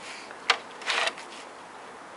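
Brown bear cub nosing at a plastic crate: a sharp click about half a second in, then a short scraping rustle.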